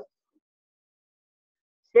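Near silence with no background noise at all: a pause in a man's lecture speech, whose words end just at the start and resume right at the end.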